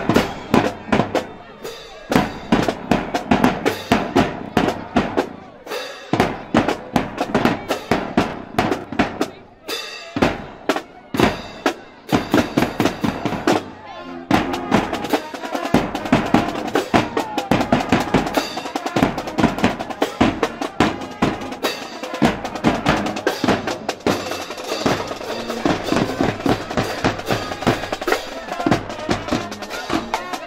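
Marching band playing: bass drum and snare drums beat a steady, fast rhythm while sousaphones and brass play along, the horn notes held longer and fuller from about halfway.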